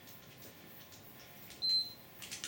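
A single short, high-pitched electronic beep about one and a half seconds in, with faint clicks and handling noise before it.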